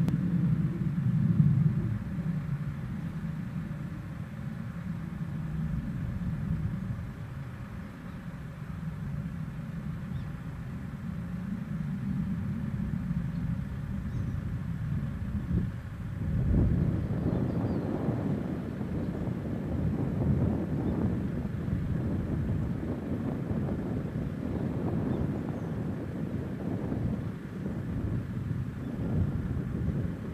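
Wind buffeting the microphone outdoors: a low rumble that turns gustier about halfway through.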